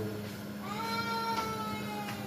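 A single drawn-out, high-pitched call begins a little over half a second in and slowly falls in pitch for about a second, over a steady low hum.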